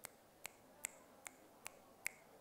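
A regular series of sharp, short clicks, five in two seconds, over faint room tone.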